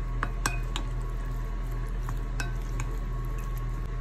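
Wooden spoon stirring raw pork strips in a glass bowl. Sharp clicks of the spoon against the glass come twice with a short ring, about half a second in and again about two and a half seconds in, with fainter taps near the end, over a steady low hum.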